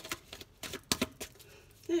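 Tarot deck being shuffled by hand: several short, sharp clicks and snaps of the cards in the second half.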